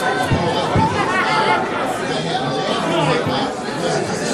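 Several voices talking over one another, an unintelligible chatter with no single clear speaker.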